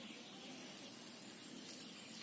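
Faint, steady hiss of outdoor background ambience with no distinct event, apart from one faint tick near the end.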